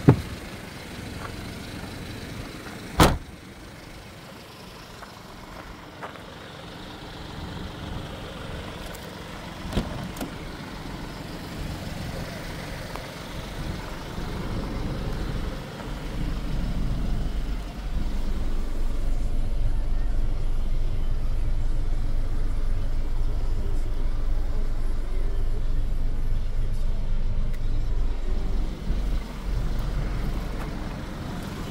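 Two sharp thumps in the first few seconds. Then, about halfway through, the 2018 Mini Cooper D's three-cylinder diesel starts and settles into a steady low idle, heard from inside the cabin.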